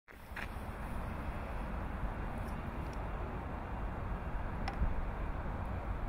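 Steady outdoor background noise, mostly a low rumble, with a faint click about half a second in and another near the end.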